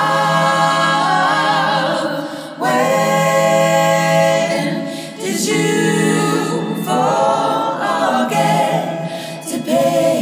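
Layered vocal harmonies sung a cappella in a choir-like passage, long held notes in phrases that break every two to three seconds, with no bass or drums under them.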